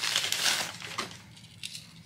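Thin plastic wrapping crinkling as a camera body is pulled out of it, loudest in the first second and then dying away.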